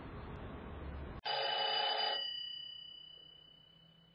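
An old-style cradle telephone's bell rings once, loud and about a second long, starting abruptly a little over a second in. Its ringing then dies away slowly. Before it there is a steady background noise.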